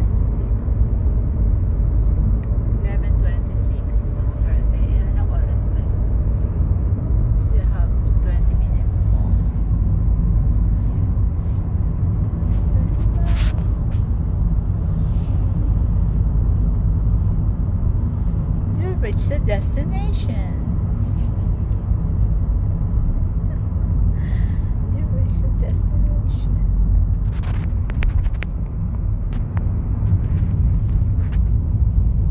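Steady low road and engine rumble inside a moving car's cabin, with a few short clicks and knocks scattered through it.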